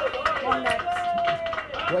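Speech: men talking, with no other clear sound standing out.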